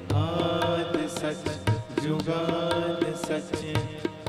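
Live Sikh shabad kirtan: voices chanting to harmonium accompaniment, with steady hand-drum strokes from the tabla.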